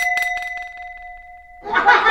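A bell-like ringing sound effect, with a quick clatter of clicks at its start. The ringing is held steady for about a second and a half and fades out.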